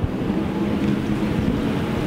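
A loud, steady rumble of a passing engine, with a hiss above it, loud enough that the talk pauses until it has passed.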